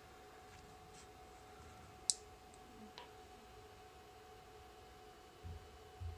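A quiet room with a faint steady hum, broken by a sharp click about two seconds in and a weaker click a second later, then soft bumps near the end: a Yaesu FT-25R handheld radio being turned over and handled.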